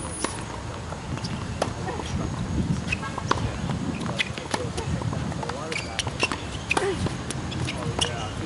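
Tennis balls struck by rackets and bouncing on an outdoor hard court during a rally: a series of sharp pops spaced about a second apart, over a low rumble.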